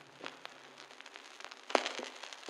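Faint crackle and scattered pops like vinyl record surface noise as the song's last low note fades away, with a louder pop near the end.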